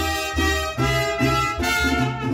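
Mariachi band playing an instrumental passage without singing, trumpets carrying the melody over a repeating bass line.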